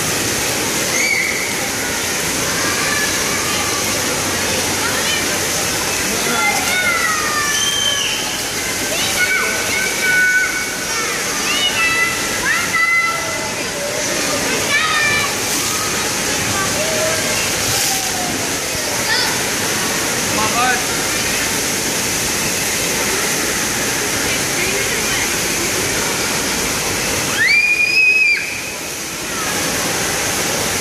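Steady rush of water-play fountains spraying and splashing, with many children's voices and calls over it. A loud high-pitched child's cry stands out near the end.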